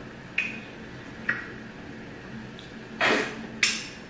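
Eating sounds from fufu with okra soup eaten by hand: a few short wet mouth smacks and slurps, the loudest and longest about three seconds in, followed at once by another.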